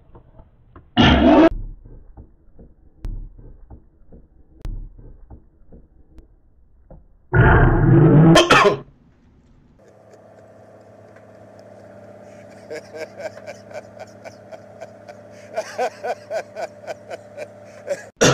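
A man coughing and choking on food in loud bursts, once about a second in and again around eight seconds in. From about halfway, music fades in with held notes and a steady ticking beat.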